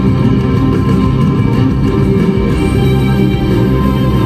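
Loud instrumental music with long held chords over a strong low bass.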